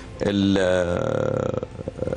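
A man's voice holding one long, drawn-out hesitation sound between sentences, lasting about a second and a half at a fairly steady pitch.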